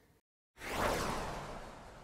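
A whoosh transition sound effect: a rush of noise that comes in quickly about half a second in and then fades out over about two seconds.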